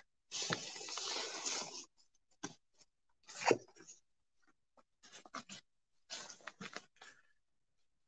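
Faint rustling, then scattered short knocks and clicks: footsteps on grass and a plastic bucket of soil being picked up and carried. The loudest knock comes about three and a half seconds in.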